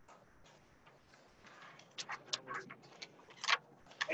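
Laptop keyboard typing: irregular clicks and taps, sparse at first, then denser and louder in the second half, with the sharpest tap near the end.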